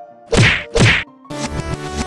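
Two loud, sudden hits about half a second apart, then loud electronic music starts up a little past halfway.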